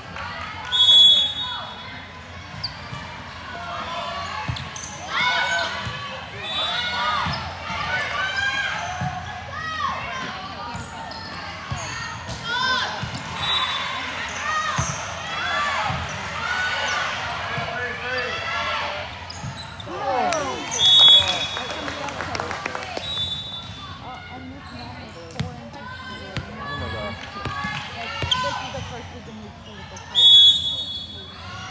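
A volleyball referee's whistle blows short blasts about a second in and twice more around the 21 and 23 second marks. Underneath are players' and spectators' voices calling out and volleyball hits in a sports hall.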